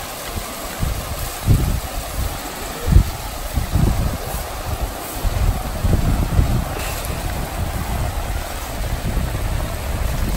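River rapids rushing steadily, with gusts of wind buffeting the microphone, the strongest about three seconds in.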